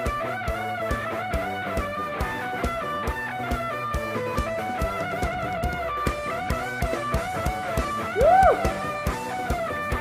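Live band playing an instrumental passage: a guitar melody over an even drum-kit beat. About eight seconds in, a short, loud note glides up and back down.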